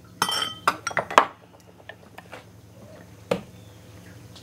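A metal spoon clinking against dishes while serving raspberry sauce: a ringing clink right at the start, a few quick clicks over the next second, then a single sharp click a little past three seconds in.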